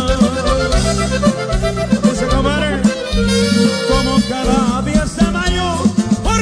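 Norteño music with no singing: an accordion plays a wavering, ornamented melody over steady bass notes and rhythm, with a held chord about midway.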